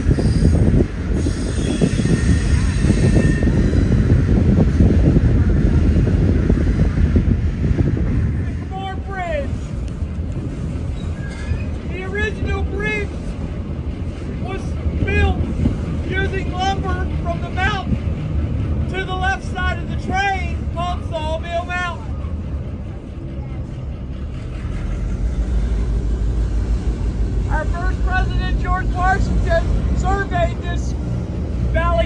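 Wind on the microphone and the low rumble of a train rolling, heard from an open-air car. Passengers' voices join from about nine seconds in and again near the end.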